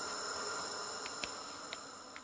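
Insects droning in steady high tones over a faint hiss of natural ambience, with two faint clicks in the second half, slowly growing quieter.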